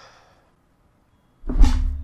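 A sudden loud boom about one and a half seconds in, with a deep rumble and a low hum that hangs on after it, typical of a dramatic sound effect in a TV show's soundtrack.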